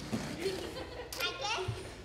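Faint children's voices and murmur from the congregation, with a short high voice about halfway through.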